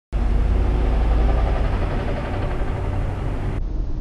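Steady low rumble of outdoor urban background noise, strongest in the bass, which turns duller after an edit near the end.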